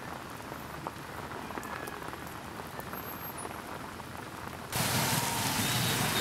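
Steady rain falling on a wet road, with scattered drop ticks. Near the end the sound jumps suddenly to a louder, steady rushing noise.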